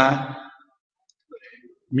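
A man's voice speaking a sermon, trailing off into a pause broken by a few faint clicks before the speech picks up again.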